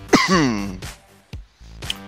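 A man coughing hard after a big vaporizer hit: a loud voiced cough just after the start whose pitch falls away over about half a second. Background music with a beat plays underneath.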